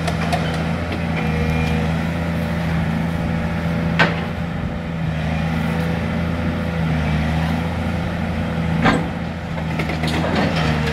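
Volvo long-reach demolition excavator's diesel engine running steadily as it works, with two sharp cracking impacts, one about four seconds in and one near the end.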